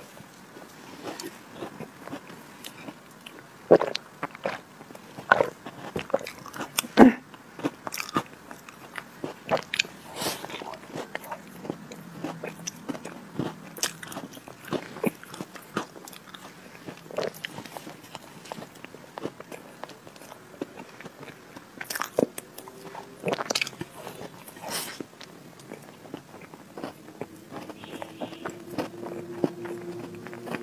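Close-miked chewing and mouth sounds of a person eating Oreo-crumb chocolate cream cake: wet smacks and irregular sharp clicks. The loudest come a few seconds in and again a little past the twenty-second mark.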